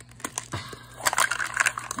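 Plastic Mini Brands capsule ball being pulled open by hand: a few scattered plastic clicks, then a dense burst of crinkling from the plastic wrapper inside starting about a second in.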